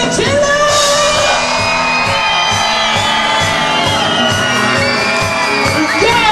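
Live rock band playing: electric guitars, a steady drum beat and a sung lead vocal, with one long held high note through the middle.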